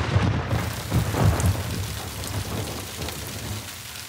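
A thunderclap's low rumble rolling and fading away over heavy rain, which keeps on as a steady hiss.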